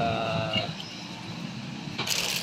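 A man's voice holds one drawn-out sound for under a second, then trails off into low, steady background noise.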